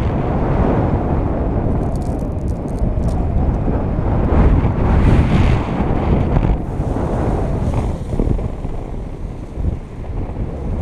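Wind rushing over an action camera's microphone in paraglider flight: a loud, steady buffeting rumble that fluctuates and eases briefly near the end.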